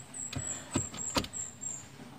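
A few sharp clicks and knocks as a car seatbelt buckle and its wiring are wiggled to test a DIY seatbelt-chime connection. A thin, high whine comes and goes in short stretches.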